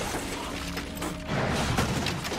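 Dramatic film score with fight sound effects: thuds and breaking, crunching glass as a body is slammed onto a car's windshield, loudest in the second half.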